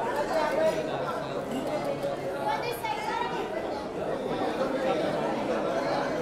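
Background chatter of several people talking over one another, with no clear single voice.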